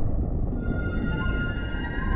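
Logo-intro sting music: a deep low rumble, with steady high sustained tones coming in about half a second in and holding over it.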